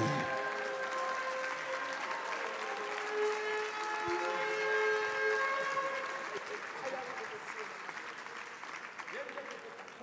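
Congregation applauding after the closing "amen" of a prayer, with voices calling out over it; the applause fades gradually over the last few seconds.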